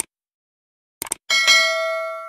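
Sound effects for a subscribe button: a short mouse click, then a quick double click about a second in, followed by a bright notification-bell chime of several tones that rings on and fades away.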